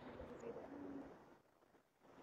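A bird's low call, a few short steady notes in the first second, over a faint hiss of sea waves.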